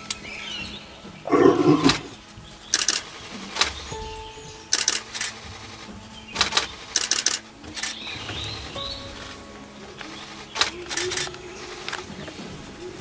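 Camera shutters clicking, singly and in quick runs of two or three, about ten times in all. A louder, lower-pitched sound lasting about half a second comes about a second and a half in.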